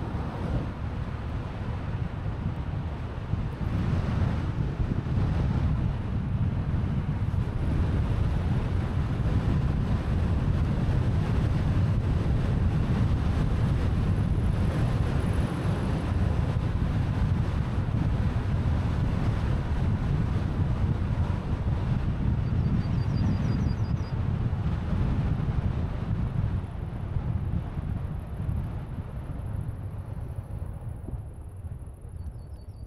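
Wind rushing over the microphone of a helmet-mounted DJI Osmo Action 4 on a moving bicycle: a steady, loud low rumble.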